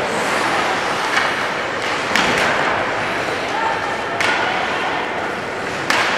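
Ice hockey play in an indoor rink: skates on the ice and a steady rink din, with a couple of sharp stick-and-puck knocks about two and four seconds in, and voices calling out.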